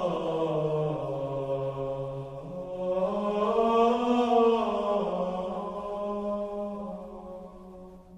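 Slow chanting on long held notes, the pitch sinking and then rising again, fading away toward the end.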